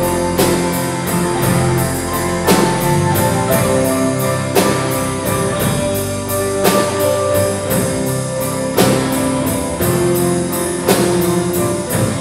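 Praise band playing an instrumental passage on electric guitars and drum kit, with steady cymbal ticking and a strong drum-and-cymbal hit about every two seconds.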